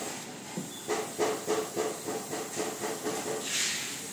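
Compressed-air paint spray gun hissing in a run of short pulses, about three a second, then giving a longer, stronger burst of spray near the end.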